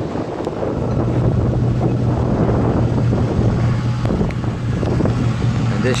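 Steady low hum of the 2015 Ford F-250's 6.2-liter gas V8 idling, with wind rumble on the microphone.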